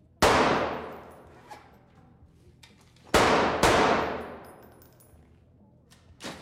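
Handgun shots at an indoor shooting range: a single shot, then two in quick succession about three seconds later, each ringing off the walls and fading over a second or more.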